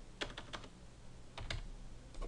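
Computer keyboard keys clicking as a word is typed and a typo corrected: about four quick keystrokes, then two more about a second later.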